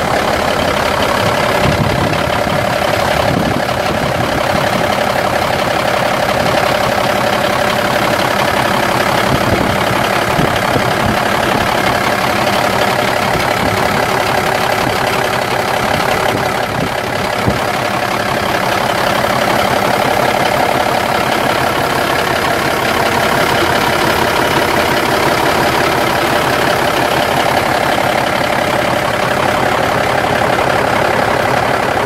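The 1990 Freightliner FLD semi truck's Cummins 14.0-litre inline-six turbo diesel idling steadily.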